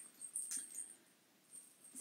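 Faint rustle and scuff of a cloth project bag being handled, one short noise about half a second in.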